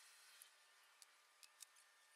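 Near silence: faint room hiss with four light clicks spread through it.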